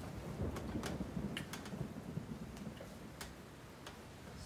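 Scattered small clicks and taps from hands working a small object, over a low, uneven rumble.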